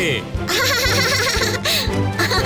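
A child's voice giggling over background music, with a low thud recurring about twice a second.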